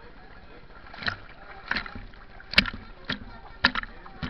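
Pool water splashing close by, a series of about six sharp slaps roughly half a second apart, beginning about a second in.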